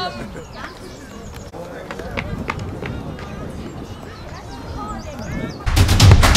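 Scattered voices and calls of football players in a team huddle, with a few light knocks. Near the end, loud intro music with heavy drums cuts in abruptly.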